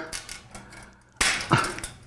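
A sharp metallic snap about a second in, then a lighter click, from a bicycle wheel's steel spokes being worked with wire cutters.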